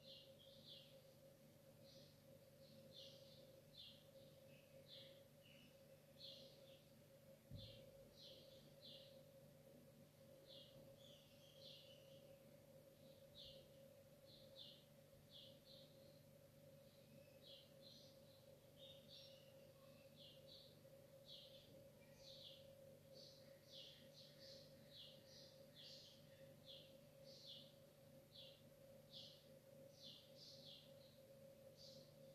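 Near silence: faint, repeated high bird chirps, irregular and about one or two a second, over a steady low hum, with one soft thump about seven seconds in.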